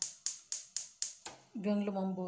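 Gas hob spark igniter clicking rapidly, about four sharp ticks a second, then stopping a little over a second in.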